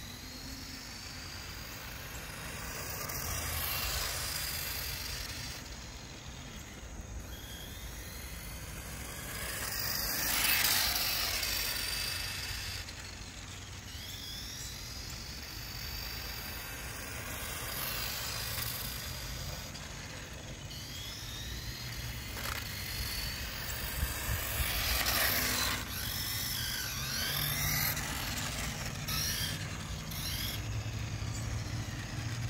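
Battery-powered 1/8-scale RC go-kart with a brushed electric motor running on AA batteries, its motor and gears whining in pitch glides that rise and fall as it speeds up and slows. It comes and goes in several louder passes.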